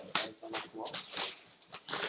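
A caged spotted dove flapping its wings, feathers and wings striking the wire bars of the cage in quick, irregular bursts of rustling and rattling.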